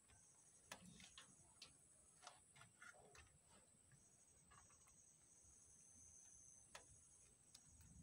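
Near silence: faint, scattered small clicks and ticks, irregularly spaced, from young rabbits nibbling at a feed tray and shifting on the loose litter, over a faint steady high whine.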